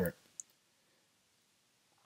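The last word of narration trails off, then one faint, short click about half a second in, then near silence.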